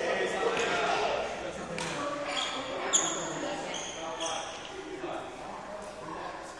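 Badminton drill on an indoor court: rackets striking shuttlecocks, with footsteps and shoe squeaks on the court floor, echoing in a large hall.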